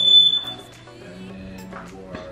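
A loud, steady, high-pitched electronic alarm tone that cuts off suddenly about half a second in. Faint background music follows.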